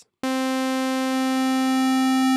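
A single sustained saw-like note from Logic's Alchemy additive synthesizer, built from stacked sine-wave partials. It starts a moment in with a bright, steady stack of harmonics, while its Pulse/Saw morph is turned toward the odd harmonics to make the tone hollower.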